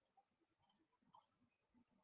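Near silence with two faint, short clicks a little over half a second apart.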